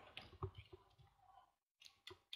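Near silence with a few faint, short clicks, the last one near the end.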